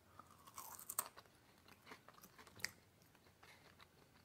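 Faint chewing of Cajun French fries, with a few soft crunches and mouth clicks scattered through it.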